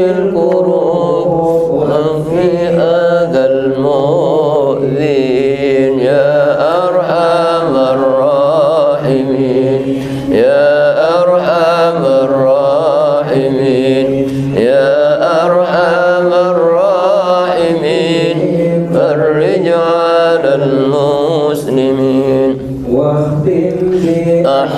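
A man chanting a slow Islamic devotional melody into a microphone, in long phrases of held, wavering, ornamented notes with brief breaks between them.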